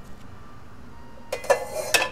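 Dishes and cutlery clinking, starting about a second and a half in, with a couple of sharp ringing clinks, over a steady low room background.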